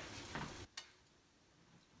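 Chopsticks stirring chopped aromatics and dried chillies in a little hot oil in a nonstick wok: faint sizzling with a couple of light taps in the first second, then the sound drops away to near silence.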